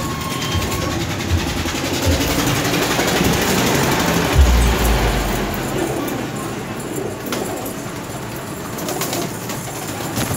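Domestic pigeons cooing against a steady rushing noise, with a heavy low thump about four and a half seconds in.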